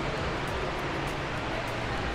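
Steady rushing background noise of a large indoor shopping mall, even and without distinct events.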